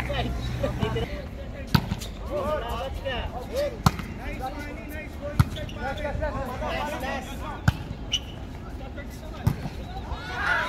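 A volleyball being struck during a rally: five sharp slaps of hands and arms on the ball, spaced roughly two seconds apart, with players' voices calling in the background.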